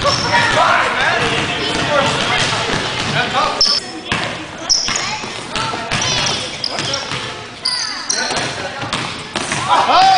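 Basketball game on a hardwood gym floor: the ball bouncing, short high squeaks of sneakers on the court, and players' indistinct voices, all echoing in the hall.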